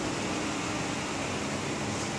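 Steady hiss and low hum of air conditioning running in a small room.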